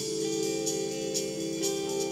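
1970s jazz-rock recording playing: sustained Fender electric piano chords over light cymbal strokes about twice a second.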